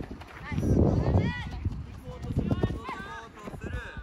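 Youth football in play: children's short shouts and calls over running footsteps and ball knocks on a dirt pitch. A loud low rumble of noise comes about half a second in and lasts about a second.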